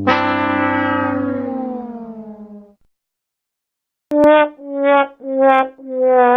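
Comedic brass sound effect: a long horn-like note sags in pitch and fades out over nearly three seconds. After a short silence and a click, the 'sad trombone' figure begins, short notes each a little lower, the sound signalling disappointment.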